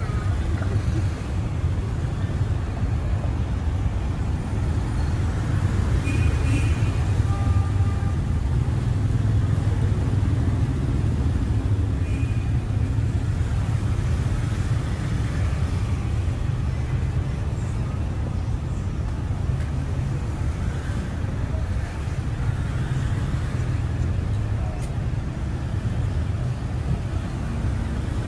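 City street traffic dominated by motorbikes and scooters running past, a steady low rumble of many small engines.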